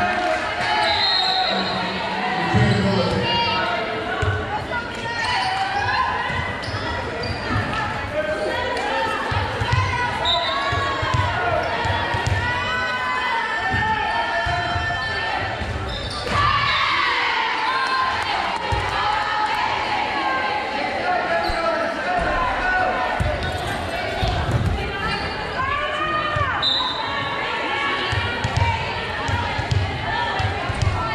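A volleyball being struck and bouncing on a hardwood gym floor during rallies, amid many voices of players and spectators calling out throughout, in a large gym hall.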